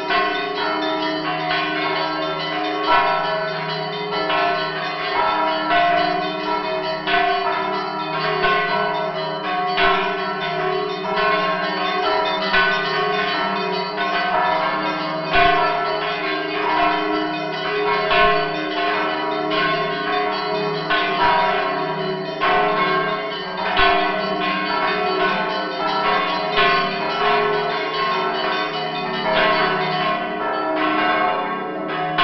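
A set of church bells of different sizes rung by hand with ropes and clappers, in the Orthodox monastery style, heard from close inside the belfry. It is an unbroken peal of rapid overlapping strikes from the smaller bells, with the deep tones of the larger bells ringing on beneath them.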